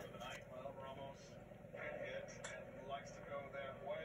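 Faint handling of a stack of glossy trading cards in the hand, with a few soft ticks as one card is slid behind the next.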